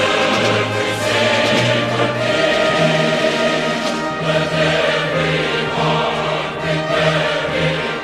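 Choral music: a choir singing long held notes over a low accompaniment whose bass note changes every second or so.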